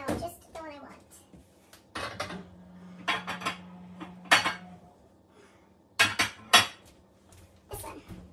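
Baking pans clattering and clanking as one is pulled out from among others in a kitchen cupboard: several separate knocks, the loudest two about six seconds in.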